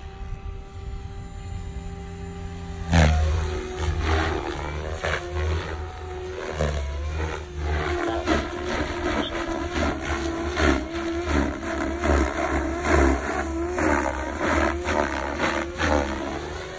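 Goblin 500 Sport electric RC helicopter flying: a steady rotor and motor hum, then from about three seconds in a sudden, much louder rotor noise with repeated sharp chops and a motor whine that rises and falls in pitch over and over as it is thrown about.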